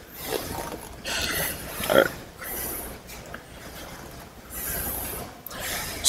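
A man breathing hard through a set of preacher curls on a curl machine: a series of forceful exhales, the loudest with a short grunt about two seconds in.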